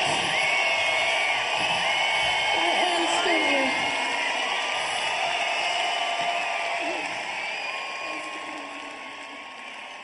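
Several voices shouting and talking over a dense background of sound, steadily fading out over the second half.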